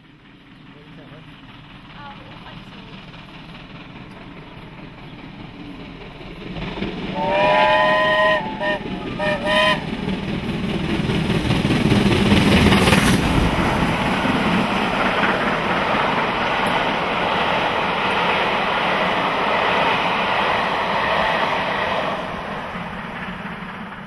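Steam locomotive 70000 Britannia, a BR Standard Class 7 Pacific, approaching at speed with its train. About seven seconds in it sounds its whistle, one long blast and then three short ones. It is loudest as the engine passes, and the rumble of the coaches follows and fades near the end.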